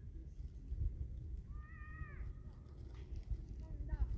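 A cat meowing: one drawn-out meow about a second and a half in, falling off at its end, then shorter calls near the end, over a steady low rumble.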